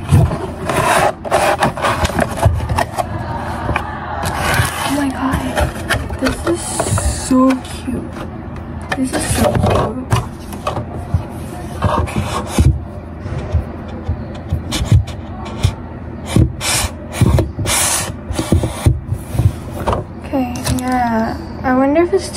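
Cardboard box and plastic packaging being handled and pulled open, an irregular run of rustles, scrapes and crackles.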